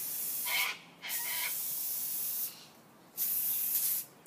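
Aerosol can of silver coloured hairspray spraying in three bursts with short gaps between them: the first under a second, the second about a second and a half long, the third under a second near the end.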